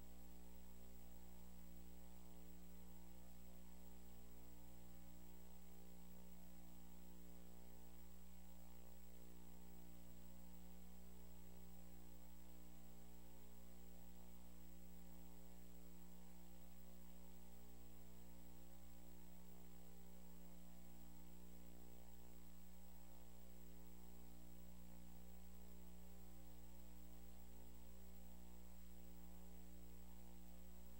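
Faint, steady electrical mains hum, buzzy with overtones, with a thin high whine above it.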